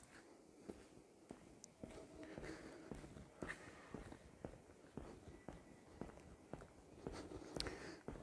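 Faint footsteps on a bare concrete floor, an even walking pace of about two steps a second.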